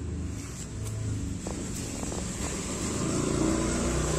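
A low, steady motor-vehicle engine rumble in the background, with a few faint light ticks about a second and a half in.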